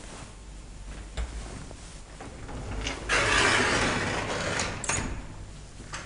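Automatic sliding doors of a PH-Company hydraulic elevator running for about two seconds and ending with a knock, after a single click about a second in.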